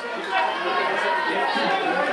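Several people's voices talking and calling at once, overlapping and indistinct.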